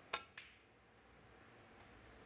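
Snooker cue tip striking the cue ball with a sharp click, followed about a quarter of a second later by a fainter click of the cue ball hitting an object ball.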